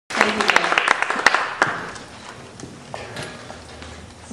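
Audience applause: a patter of sharp claps that thins out and dies away within about two seconds.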